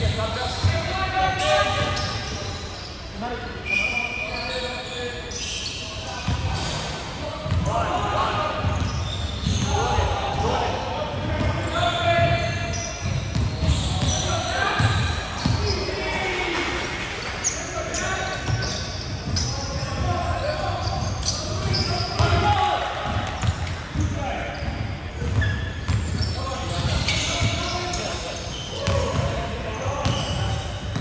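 Basketball bouncing on a hardwood court, with repeated short thuds that echo in a large gym hall. Players' voices talk and call out over it.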